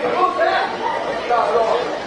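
Several people's voices chattering over one another, with no single clear speaker.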